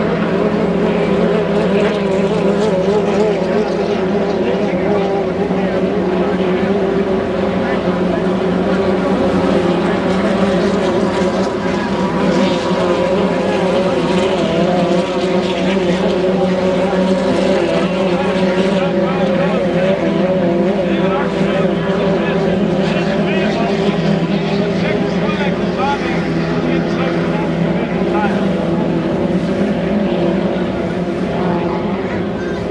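2.5-litre class racing hydroplanes' inboard engines running at speed, a loud steady engine note whose pitch wavers slightly as the boats race.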